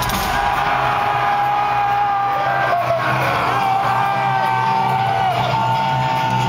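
Loud live metal band heard from inside the crowd: long held, distorted notes that slide down briefly about five seconds in and then settle on a slightly higher note. Crowd yelling and whooping runs underneath.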